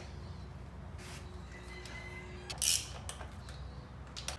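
Quiet hand-tool work on an engine: a socket wrench loosening the valve-cover nuts of a Honda B16, with a few faint clicks and one short rasp near the three-second mark.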